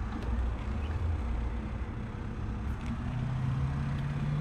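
Honda Civic EK hatchback driving, heard from inside the cabin: a steady low road and engine rumble, with the engine note rising from about three seconds in as the car accelerates.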